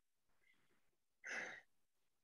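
Near silence over a video-call line, broken a little over a second in by one short puff of breathy noise: a person's exhale near a microphone.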